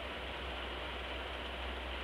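Steady background hiss with a low hum. No distinct knocks, clinks or scraping from the spoon or jar.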